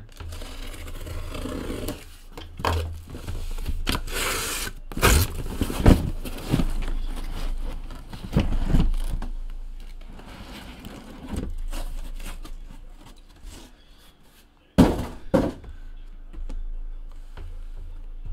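A sealed cardboard shipping case of trading-card boxes being handled and opened. Cardboard scrapes and plastic wrap crinkles, broken by several sharp knocks and thuds: the loudest comes about six seconds in, and another follows a quiet stretch near the end.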